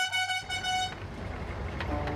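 A vehicle horn tooting twice in quick succession, a high toot in the first second, followed by a steady low engine rumble.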